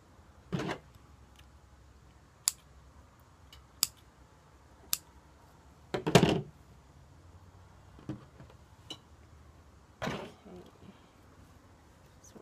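Handling noise while a steamed eco-print bundle of wool blanket and scarf is opened: scattered knocks and a few sharp clicks, the loudest a thump about six seconds in.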